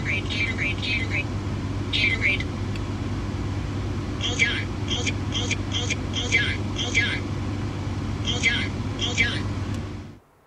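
Steady engine and road hum inside a car cabin, over which come short, very high-pitched squeaky voice-like sounds in quick runs, the busiest stretch from about four to seven seconds in.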